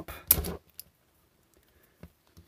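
Moulded plastic housing of a disposable electrosurgery pen cracking as its glued seam is pried open with a small screwdriver. A short crackle with one sharp snap about a quarter of a second in is followed by a few faint clicks.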